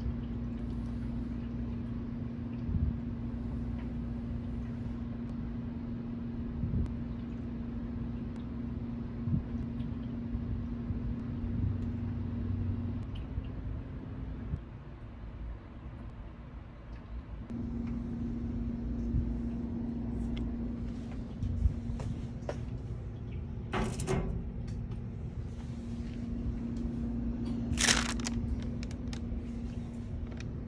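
A steady low electrical-sounding hum over a low rumble, broken off for a few seconds in the middle, with a few sharp knocks or clacks, two of them louder, in the last third.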